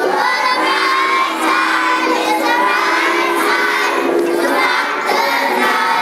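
A large choir of young children singing together, many voices holding notes at once.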